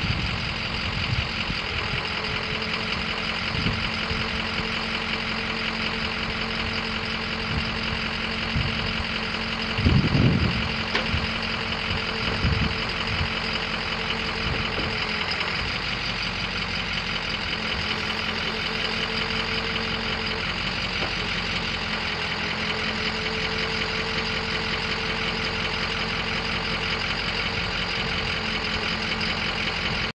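Ford 6.0L V8 diesel engine idling steadily with a knocking clatter, a few low thumps about ten and twelve seconds in.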